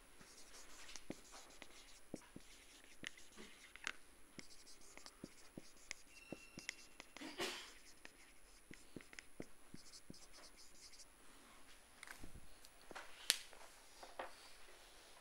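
Marker pen writing on a whiteboard: faint, scattered short strokes and ticks, with a slightly louder stroke about halfway through and another near the end.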